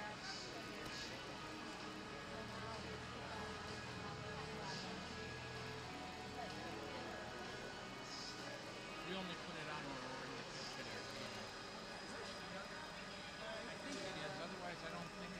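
Ice-rink ambience: music over the arena sound system with indistinct voices behind it, and the low engine of an ice resurfacer running as it comes onto the ice near the end.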